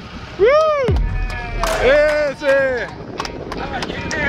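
Men's drawn-out whooping shouts, rising and falling in pitch, as a sama is swung aboard in a landing net. A few sharp knocks come near the end.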